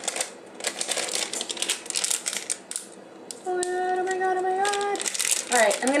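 Rapid small clicks and crinkles as a paper spice packet of paprika is handled and the excess put back. About three and a half seconds in, a woman hums one held note for about a second and a half.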